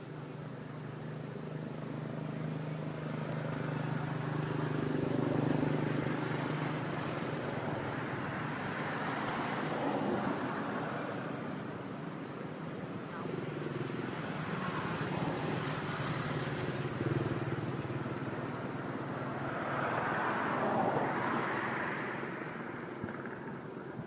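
Motor traffic passing by. A steady low engine hum is joined by a run of vehicles that each swell up and fade away, about four or five passes.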